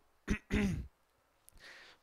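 A man clearing his throat: a short sharp burst, then a brief voiced sound falling in pitch, followed by a faint intake of breath near the end.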